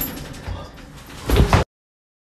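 Thumps and mechanical rattling of an elevator car after two people jump inside it, with a heavier thump about a second and a half in. Then the sound cuts off.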